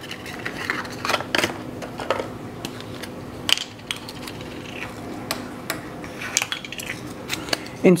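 A cardboard 35mm film box being opened and the film cartridge unpacked by hand: rustling of packaging with a string of small sharp clicks and taps, the loudest at about a second and a half in and again at about three and a half seconds.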